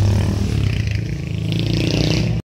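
Motor vehicle engines running on the road, with a motorcycle riding past close by; the low engine hum fades over the first second or so.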